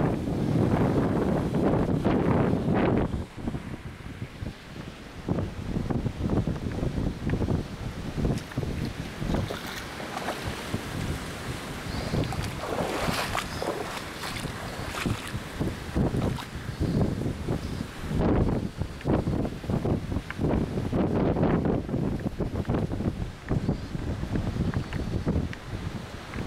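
A car ploughing through deep floodwater, a loud rush of spray for about the first three seconds, then gusty storm wind buffeting the microphone.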